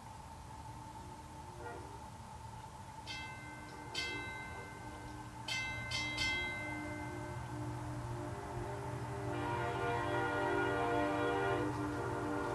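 1953 Nathan M5 five-chime locomotive air horn sounding: a few short, high blasts a few seconds in, then from about nine seconds in a louder full chord held on.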